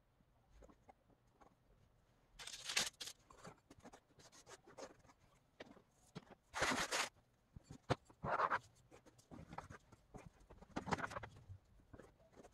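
Hands working salt dough on a floured plastic tray: soft scraping and rustling in short bursts. The loudest come about three seconds in, around seven seconds and near the end.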